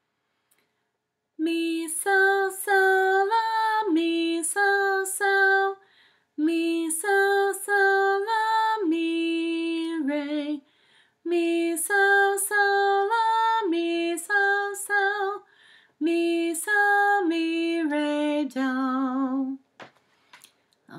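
A woman sings a slow children's song unaccompanied, on solfège note names that include re. She sings four short phrases with brief pauses between them, and holds the long last notes of the second and fourth phrases with vibrato.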